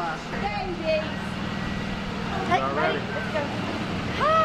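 Indistinct voices talking over a steady low hum of street traffic.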